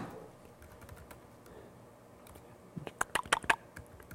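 Typing on a computer keyboard: a few faint keystrokes, then a quick run of sharper keystrokes about three seconds in.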